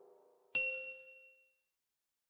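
A single bright bell-like ding about half a second in, ringing out and fading over about a second. It is the notification-bell chime of a YouTube subscribe-button animation.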